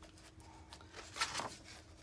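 A page of a glossy craft book being turned by hand: a brief paper rustle about a second in, otherwise faint.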